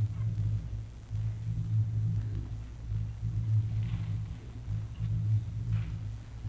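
Steady low electrical hum and background noise of an old courtroom audio recording, with two faint brief sounds about four seconds in and near the end.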